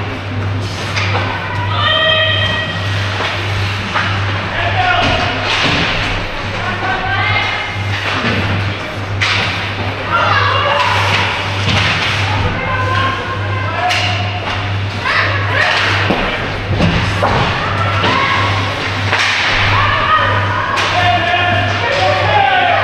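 Ice hockey play on the rink: repeated knocks and thuds of sticks, puck and bodies against the ice and boards, with high-pitched shouts from players or spectators and a steady low hum of the arena.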